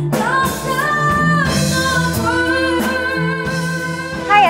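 A woman singing a slow melody into a microphone, holding long notes with a light vibrato, over a band accompaniment.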